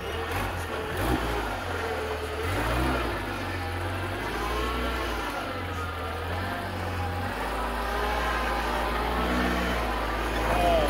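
Lifted Toyota pickup's engine working at low speed as the truck crawls over boulders, the revs rising and falling several times.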